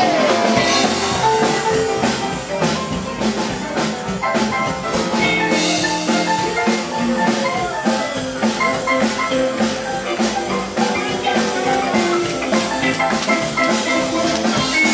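Live band playing: electric guitar over a steady, fast drum-kit beat and bass, loud and close, with no singing.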